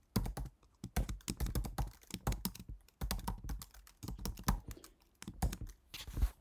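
Typing on a computer keyboard: irregular key clicks in quick runs, with short pauses between them.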